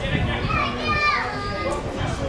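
Raised voices shouting and calling out during a football match, with one loud call about a second in that falls in pitch.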